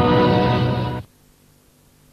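The closing held chord of a 1960s recorded rugby song, cut off abruptly about a second in, leaving only faint hiss.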